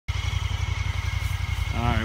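Honda Pioneer 1000-5 side-by-side's parallel-twin engine idling with a steady, rapid low throb.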